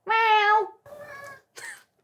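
A pet cat meowing: one loud, drawn-out meow at the start, then a fainter, shorter call and a brief one near the end.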